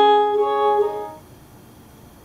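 Bowed viola da gamba music: a sustained note with a higher note joining it, fading away a little over a second in and leaving quiet.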